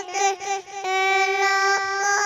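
A two-and-a-half-year-old girl singing a naat unaccompanied into a handheld microphone: a few short sung syllables, then a long held note from about a second in.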